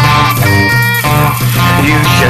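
Blues band music with no singing at this point: guitar over a bass line whose notes change in even steps.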